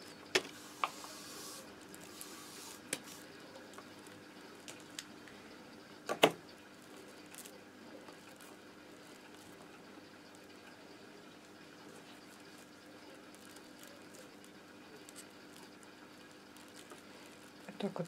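Scissors snipping the ends of rolled newspaper tubes: a few short, sharp snips and clicks spread out, the loudest about six seconds in, with quiet handling of the stiff paper weave in between.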